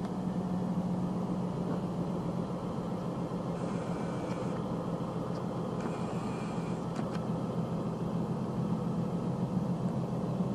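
1988 International 8300 truck's diesel engine running steadily while the end-dump trailer's raised box is lowered by its hydraulics. Two short hisses come in about four and six seconds in.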